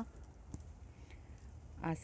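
A single sharp click about half a second in, over a low, steady rumble, with a woman's voice starting near the end.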